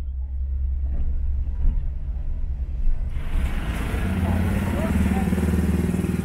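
Street traffic: a low steady rumble, then from about three seconds in a truck engine running close by, louder and with a steady low hum.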